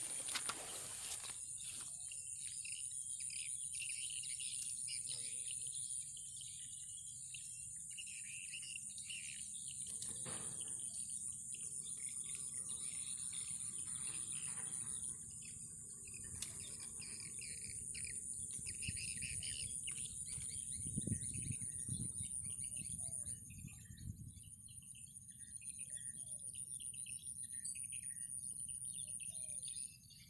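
Faint rural ambience: birds chirping here and there over a steady high-pitched insect drone.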